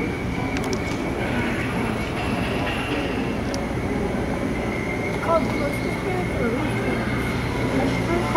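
Steady ambient wash of an indoor boat dark ride, with a continuous high thin tone and a low hum running through it and faint murmured voices.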